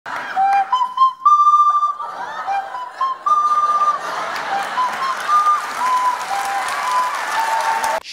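Two plastic recorders played through the nose at once, giving a simple tune of short held notes.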